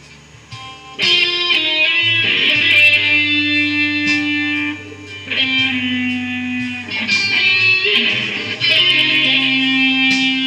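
Electric guitar lead playing: soft notes for the first second, then loud phrases of long held notes, with a short dip about halfway through before the next phrase.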